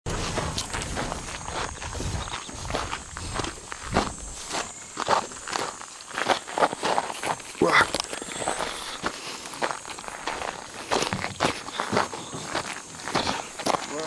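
Footsteps walking over dry grass and stony ground, an irregular run of crunching steps.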